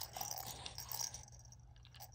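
Faint clicks and light rattling from a baby's plastic lattice rattle ball with beads inside, turned in small hands; a few soft clicks in the first second, then quieter.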